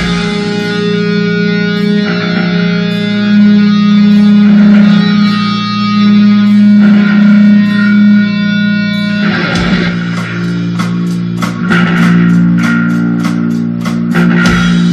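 Live rock band playing: electric guitar chords ring out sustained for the first nine seconds or so, then the drum kit comes in with a steady beat of cymbal and drum strokes.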